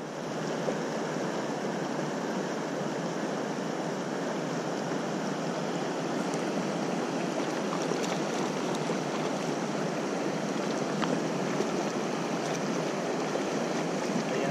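Steady rush of flowing river water, with a few faint ticks over it.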